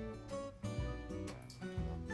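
Background music led by plucked acoustic guitar, with notes changing every fraction of a second.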